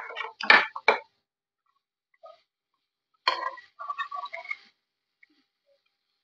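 Metal kitchen utensil clicking and scraping against a griddle as cooked meat is picked up for serving, in two short bursts of clatter: one at the start and another about three seconds in.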